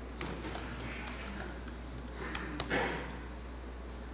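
Faint typing on a computer keyboard: scattered soft keystroke clicks over a steady low hum.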